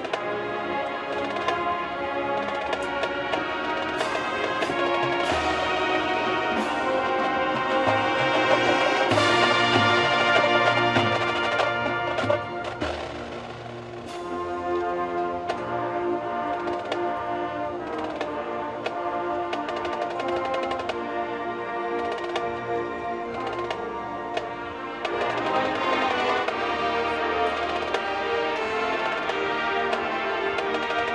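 A marching band's brass section playing a slow, sustained chorale with percussion. It swells to a loud peak about ten seconds in, drops back briefly around thirteen seconds, then builds again near the end.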